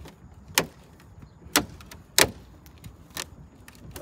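A VW badge and its backing plate being pressed into a van's front grille: four sharp clicks as the clips snap into place, the loudest about one and a half and two seconds in.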